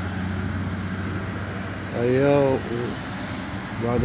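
Steady low engine drone of street traffic, even and unchanging. A man's voice comes in briefly about two seconds in.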